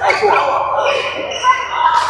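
Indistinct voices talking in a large indoor badminton hall, with a sharp smack right at the start and another at the end.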